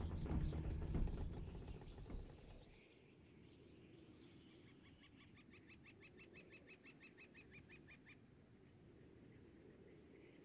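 A low sound fades away over the first two seconds or so. Then, faintly, a bird gives a fast run of short chirps, about six a second, which stops abruptly about eight seconds in.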